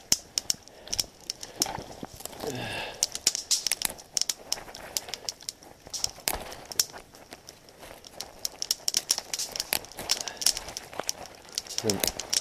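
Dry dead twigs and small deadfall branches snapping as they are broken off by hand: a rapid, irregular run of sharp cracks with brush rustling in between.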